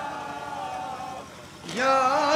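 A man's voice chanting a noha lament, the sung line trailing off into a brief lull, then the chanting voice starting up again loudly near the end.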